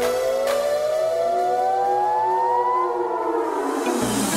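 Instrumental build-up in a pop song: a synth riser climbs steadily in pitch for about three seconds, then fades, with the bass and drums dropped out.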